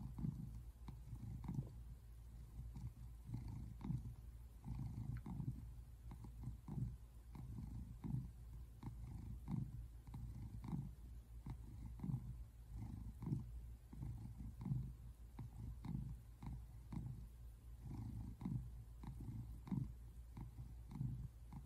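Brown tabby American shorthair cat purring, a low rumble that swells and eases with each breath, a little more than once a second.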